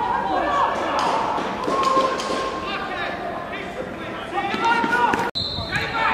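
Footballers' voices shouting on the pitch of an empty stadium, with the thuds of a football being kicked.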